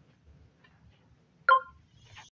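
Faint room noise, then a single sharp tap with a brief ring about one and a half seconds in, as a hand reaches for and touches the recording phone.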